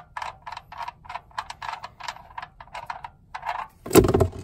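Steel drain plug being spun by hand out of a Ford 3000 tractor's oil pan, its threads scraping in short, irregular bursts about four a second. Near the end the plug comes free with a sudden loud burst as the old oil starts to gush out.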